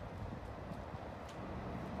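Faint footsteps on alley pavement over low outdoor background noise.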